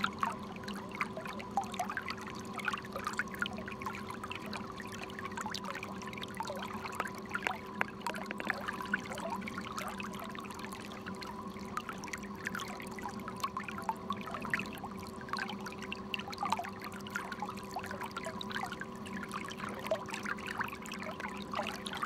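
Water gurgling and splashing in the wake behind a moving boat, over a steady motor hum.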